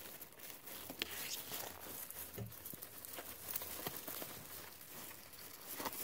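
Guinea pigs rooting and chewing in a pile of dry hay close up: crinkly rustling of the stalks with many irregular small crunches and clicks.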